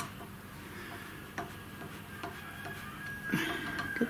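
A few faint, light ticks and clicks of small hand tools (pliers and screwdriver) working on the spindle's screw terminal block, over a low steady hum, with a thin steady high tone in the second half.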